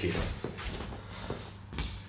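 A few soft footsteps and shuffles of shoes on a training mat, faint and irregular, as a grappler steps into position.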